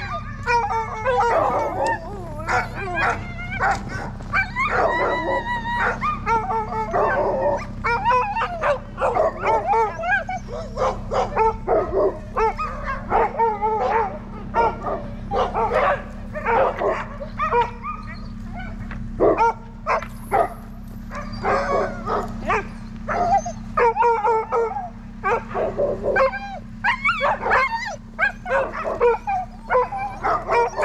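A yard of sled dogs barking, yipping and howling, many at once and without a break, over a steady low hum.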